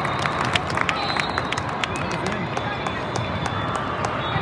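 Busy volleyball hall ambience: many overlapping voices of players and spectators, with irregular sharp smacks and knocks of balls from the surrounding courts.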